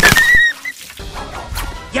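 Animated-film soundtrack: a sharp hit at the start, followed by a high-pitched squeal lasting about half a second, then quieter background music.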